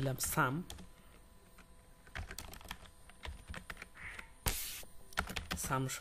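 Typing on a computer keyboard: a scatter of quick key clicks, with one louder burst about four and a half seconds in.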